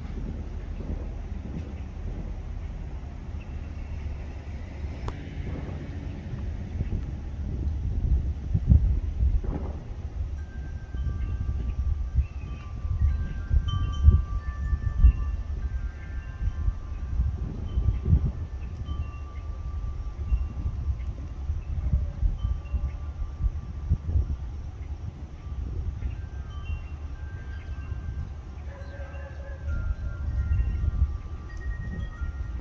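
Wind chime ringing from about ten seconds in: clear tones at several different pitches, each held for a second or two and overlapping, over a low steady rumble.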